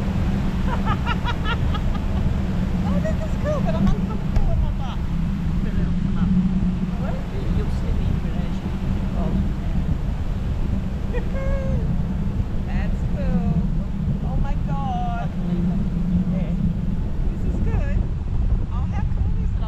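Steady low rumble of wind buffeting the microphone while parasailing, with short stretches of indistinct voices scattered through it.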